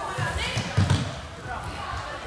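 Several heavy thuds on an indoor sports-hall floor during a floorball match, the loudest just before the middle, with voices calling in the hall.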